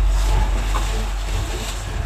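Low rumble of wind and handling noise on the camera's microphone as the camera is carried into a narrow rock crevice, with a faint rustling haze above it.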